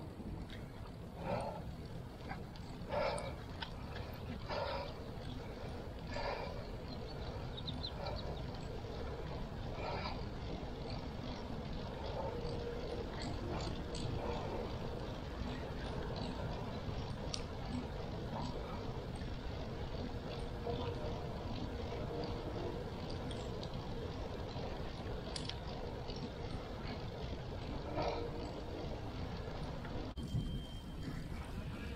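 Bicycle ride on a paved path: a steady low rumble of wind and tyre noise. Short sounds come about every one and a half seconds for the first ten seconds, then the rumble goes on alone.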